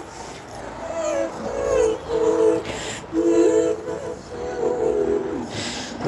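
A woman singing a wordless melody in held, stepped notes into an earphone microphone, with short breathy hisses about three seconds in and near the end.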